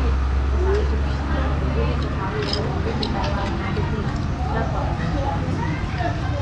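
Background voices talking, with a low vehicle rumble during the first two seconds and a couple of light clicks about two and a half to three seconds in.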